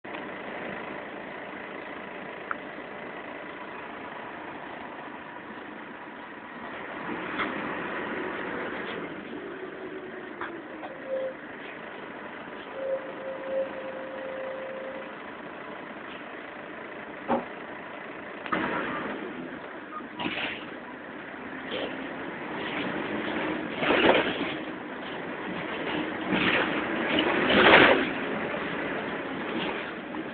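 Bus engine and road noise heard from inside the passenger saloon, with knocks and rattles from the body, growing louder in surges during the second half.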